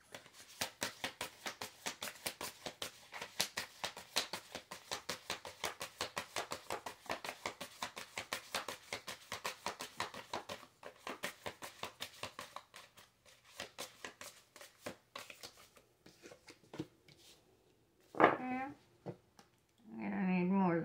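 A deck of tarot cards being shuffled by hand: a quick run of soft card flicks, several a second, for about twelve seconds, then sparser flicks as the shuffle slows.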